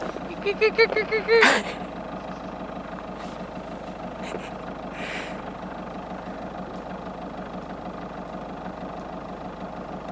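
A person laughing in a few short bursts during the first second and a half, over a steady engine-like hum that runs on unchanged.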